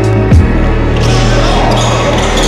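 Background music with a deep bass line and a kick-drum beat. About a second in, the drum stops and a hissing wash swells in.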